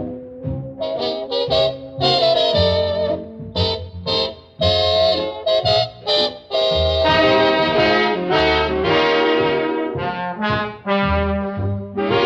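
Swing big band playing an instrumental passage, with brass prominent. The band plays short punchy chords with brief breaks in the first half, then fuller sustained ensemble playing from a little past halfway.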